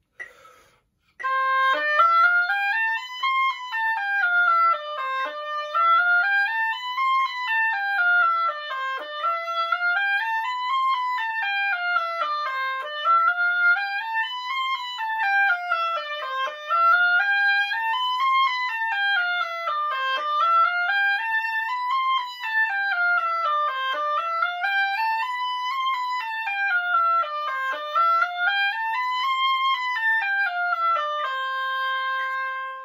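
Oboe playing a C major scale exercise, running note by note up to the C an octave above and back down, again and again in steady, even waves; it starts about a second in.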